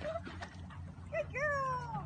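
A dog whining: two short whimpers, then one longer whine that falls in pitch near the end.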